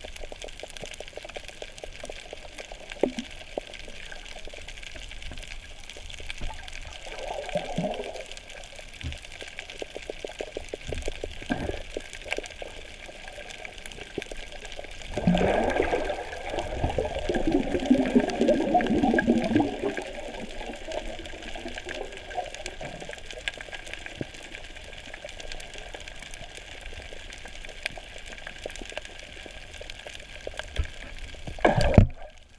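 Muffled underwater sound picked up by a submerged action camera: a steady hiss with bursts of bubbling and gurgling water, the longest and loudest from about 15 to 20 seconds in.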